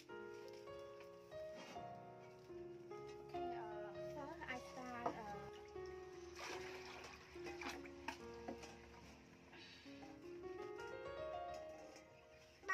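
Soft background music: a slow melody of held notes that step up and down.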